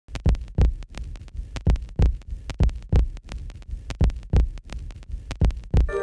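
A steady pulse of low thumps, the loudest coming in pairs about once a second like a heartbeat, with lighter ticks between.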